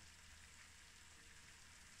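Near silence: room tone, a faint steady hiss over a low hum.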